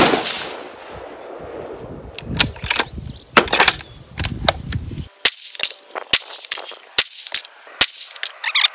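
The report of a .308 bolt-action rifle shot dies away over the first second or so. Then comes a series of sharp metallic clicks and clunks as the bolt is worked to eject the spent case and chamber the next round.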